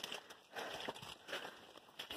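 Faint footsteps and rustling of leaves and branches as someone walks through mangrove shrubs, soft and irregular.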